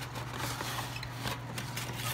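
Cardboard rustling and scraping as a ceramic dinner plate is slid out of its cardboard box, a scatter of light scratchy clicks over a steady low hum.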